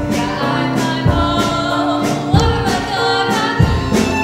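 Live theatre band playing a song with voices singing sustained notes over a steady drum beat.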